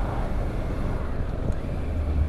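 Wind buffeting the microphone over the low, steady drone of a Triumph Tiger 850 Sport's 888 cc three-cylinder engine and road noise while riding at around 45 mph.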